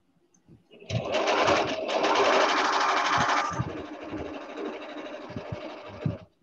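Electric sewing machine stitching. It starts about a second in, runs loudly for a couple of seconds, then continues more softly and stops near the end.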